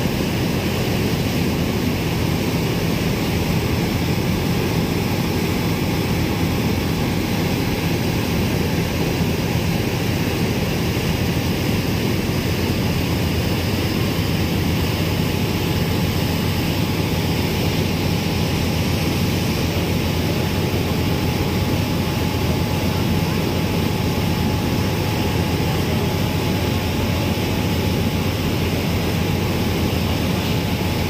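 A ferry's engines droning steadily at cruising speed, with the rushing of water from its wake.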